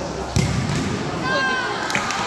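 A futsal ball kicked on an indoor hard court: one sharp thud about half a second in, echoing in the hall, followed by brief squeaks from the play on the court.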